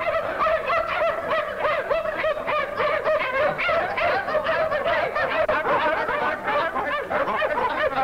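Several young men laughing together, many voices overlapping without a break.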